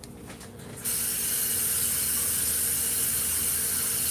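Kitchen tap turned on about a second in, running water steadily over a bunch of shadow beni (culantro) being rinsed, and shut off right at the end.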